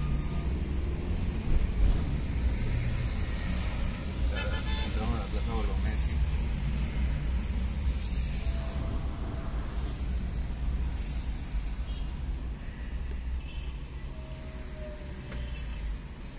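Low, steady engine and road rumble inside a car moving through city traffic, with a brief pitched sound about four to six seconds in; the rumble gets quieter near the end.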